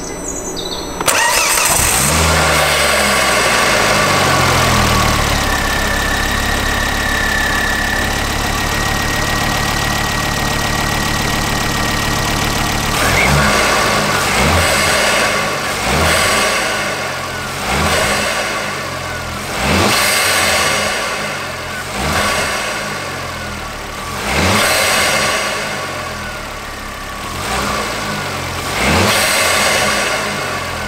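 Ford Focus ST Mk2's 2.5-litre turbocharged five-cylinder engine, breathing through an open cone induction filter, starts about a second in and settles to a steady idle. From about halfway through it is blipped about seven times, each rev rising sharply and falling back to idle.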